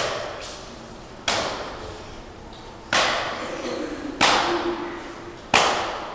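Kicks and hand strikes landing on a karateka's gi-covered body in Sanchin kitae body conditioning: five sharp smacks about one and a half seconds apart, each ringing briefly in the hall.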